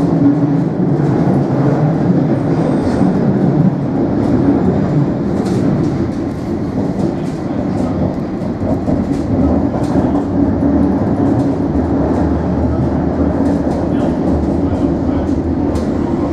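London Underground S7 Stock train running through a tunnel, heard from inside the carriage: a steady rumble of wheels on rails with scattered clicks over rail joints. The low rumble grows stronger about halfway through.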